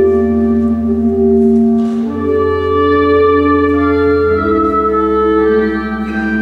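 Church organ playing slow sustained chords over a deep held bass, the chords changing every second or two.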